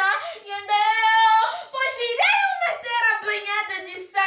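A woman wailing in long, high, drawn-out cries that rise and fall in pitch, with a brief catch of breath midway.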